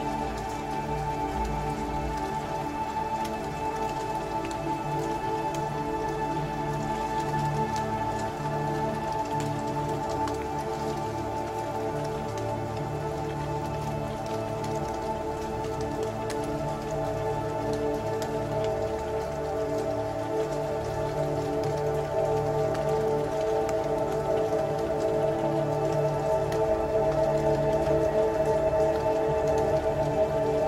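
Ambient electronic music: sustained drone chords held steady, with a dense crackle of small rain-like clicks over them, swelling slightly near the end.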